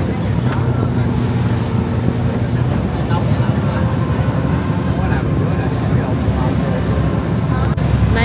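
River ferry's engine running steadily, with the churn of its wake water and wind on the microphone.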